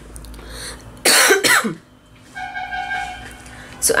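A woman coughs, a loud rough burst about a second in, followed by a fainter steady tone lasting about a second.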